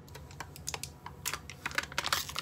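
Sealed lid of a plastic Siggi's yogurt cup being peeled back by hand: a quick, irregular run of small crackles and ticks that grows denser toward the end.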